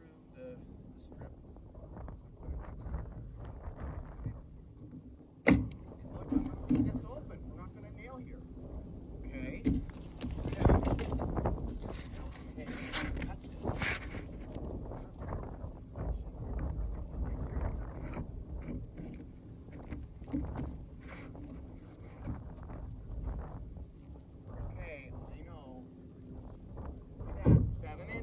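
Roofing work on asphalt shingles. A single sharp shot from a pneumatic coil roofing nailer comes about five seconds in. Then a hook-blade utility knife scrapes and scores as it cuts a shingle along the valley, with scattered knocks.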